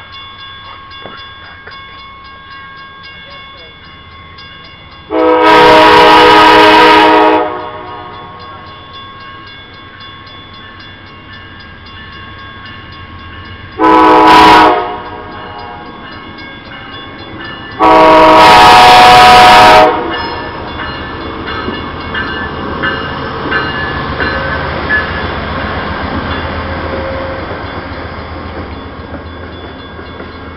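Railroad crossing bell ringing steadily while an Amtrak passenger train sounds its multi-note horn three times: long, short, long, about five, fourteen and eighteen seconds in. From about twenty seconds in the train passes the crossing, its wheels rumbling and clacking on the rails.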